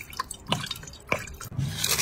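Liquid poured into a pot of water, with a few separate drips plinking into it, each falling in pitch, then a louder, noisier stretch near the end.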